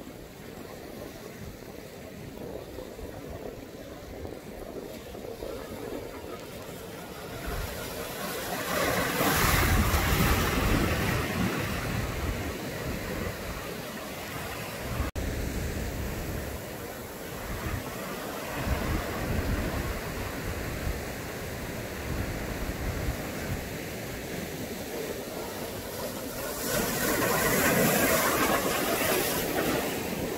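Ocean surf breaking on a rocky shore: a steady wash of waves that swells louder twice, about a third of the way in and again near the end.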